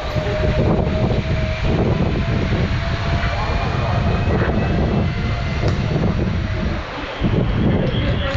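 Zipline trolley rolling along its steel cable: a thin whine that rises slightly in pitch over a loud, steady low rumble, with a brief dip in the rumble about seven seconds in.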